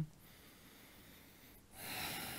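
Near silence, then a man's audible breath out, close to the microphone, begins near the end: a soft rising hiss.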